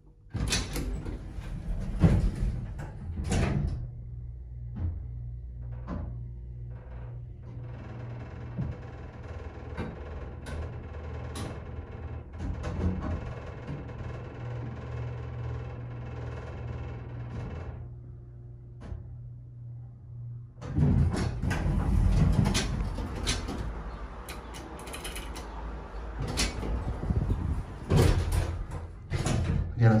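Vintage 1960s Dover hydraulic elevator: the cab doors close with a few knocks, then the pump motor hums steadily as the car rises, with a whine over it through the middle of the ride. Near the end come loud rumbling and knocks as the car reaches the third floor.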